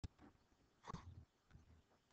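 Near silence: faint room tone, with a short click at the very start and one brief faint sound a little under a second in.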